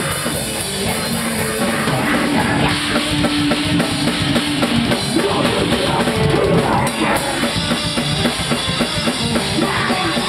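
A heavy rock band playing live and loud: a drum kit pounding fast and dense, with electric guitar and bass guitar, one held note showing about two to five seconds in.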